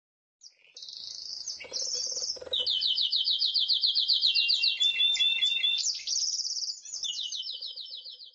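Birdsong: high, rapid trills of evenly repeated chirping notes, with two birds overlapping at times.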